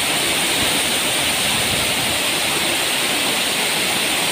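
Large waterfall cascading down a stepped rock face into a pool: a loud, steady rush of falling water.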